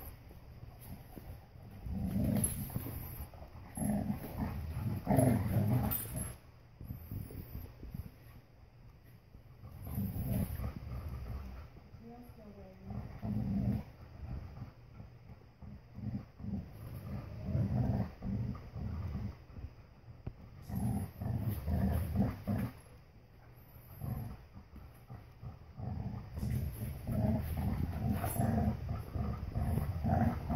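Dogs play-growling in low, rumbling bouts of a few seconds each, with short quiet gaps, while tugging on a rope toy between them.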